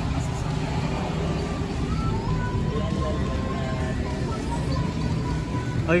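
Steady roadside traffic rumble, with faint music playing over it.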